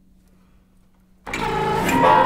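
Contemporary chamber ensemble of winds, strings, harp and piano suddenly coming in a little over a second in with a loud, dense, sustained mass of sound, after a quiet stretch holding only a faint low hum.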